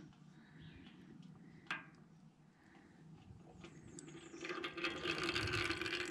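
Faint trickle of differential gear oil draining in a thin stream into a metal drain pan, with a single click about two seconds in and a hissing noise growing louder from about four seconds in.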